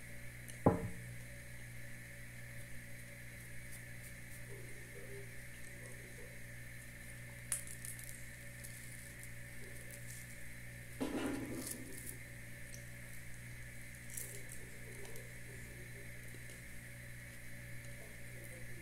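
A small coffee cup set down on a table with one sharp knock just under a second in, then soft handling sounds and a short rustle about halfway through as bread is torn apart. A steady low hum sits underneath.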